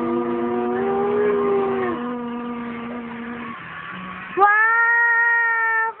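A small boy's high voice holding long drawn-out sung notes: the first bends and falls away about two seconds in, and after a quieter stretch a loud, steady high note starts near the end.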